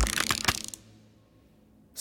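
A quick rattling clatter of sharp clicks, lasting under a second, as a harmonium is grabbed and its wooden case and keys knock.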